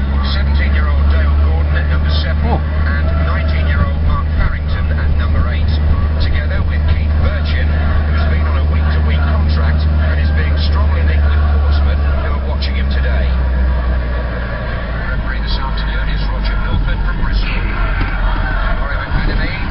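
Steady low drone of a car's engine and road noise heard inside the moving car's cabin, with indistinct voices over it; the drone drops away about fourteen seconds in.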